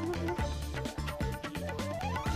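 Television news intro theme music with a steady beat of deep pulses and percussion hits, and a rising tone near the end.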